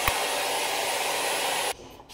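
Hot-air styling brush blowing steadily, a rushing air noise with a thin high whine, cutting off suddenly near the end.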